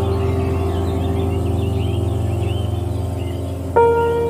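Soft ambient background music of sustained, steady tones, with a new chord coming in near the end.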